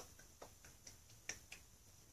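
Near silence with about five faint, sharp clicks scattered irregularly through the two seconds.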